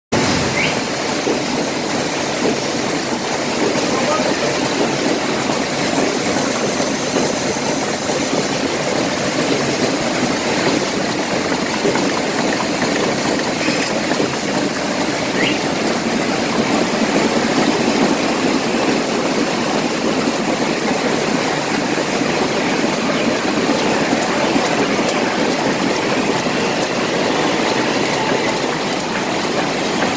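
Roland RFK3B sheetfed offset printing press running, a loud steady mechanical din.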